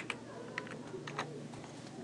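Computer keyboard typing: a few light, irregularly spaced keystrokes as letters are entered one by one.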